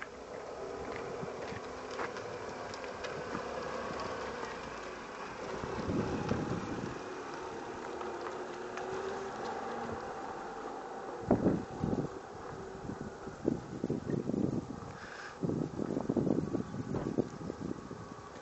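Stretched Smart car limousine driving away across a yard, its steady engine hum growing fainter as it goes. From about the middle on, loud gusts of wind buffet the microphone.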